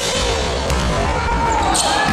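A basketball bouncing on an indoor court amid game noise, with music playing underneath.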